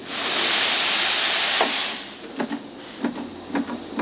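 Laundry steam press letting off a loud, steady hiss of steam for about two seconds, then a few light knocks and clunks as the press is worked.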